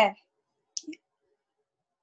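A single short click a little under a second in, following a spoken 'okay'; otherwise near silence.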